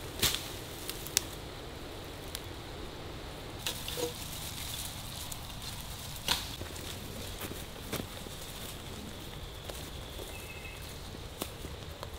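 Rustling and sharp snaps of fern fronds being broken off and handled, a few separate cracks over a steady outdoor background, the loudest about a quarter-second in and again about six seconds in.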